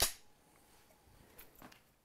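Film clapperboard snapped shut: a single sharp clack at the very start, the slate clap that marks the sync point at the head of a take.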